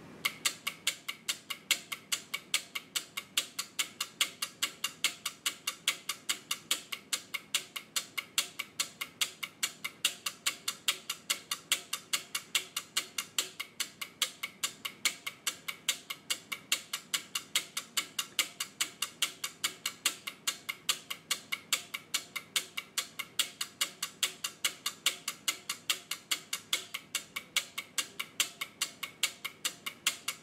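Bank of electromechanical relays on a 4-bit relay-computer logic board clicking fast and evenly, several clicks a second, as an Arduino test steps through all 256 input combinations of the two 4-bit inputs.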